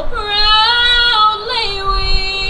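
A young woman singing the national anthem solo into a microphone over an outdoor PA, holding long sustained notes that step from one pitch to the next.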